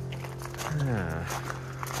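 Footsteps crunching on a gravel path over steady background music, with a short hummed voice sound about a second in.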